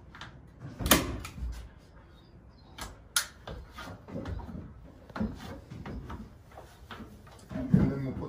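A staple gun snapping sharply into a plywood wall, about a second in and again about three seconds in, fastening a small bag. Lighter knocks and handling noise follow, with a thump near the end.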